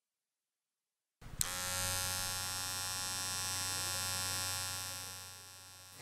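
Electric hair clippers switched on with a click just over a second in, then buzzing steadily before fading away near the end.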